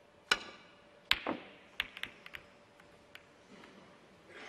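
Snooker cue tip striking the cue ball full-blooded off the cushion, then about a second later the cue ball cracking into the reds, the loudest click, followed by several lighter clicks of snooker balls knocking together as the reds scatter.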